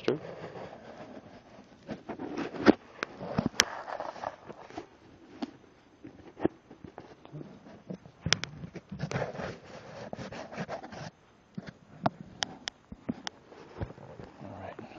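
Handling noise: scattered clicks and knocks with scraping and rustling, and no steady machine sound. The sharpest click comes a little under three seconds in.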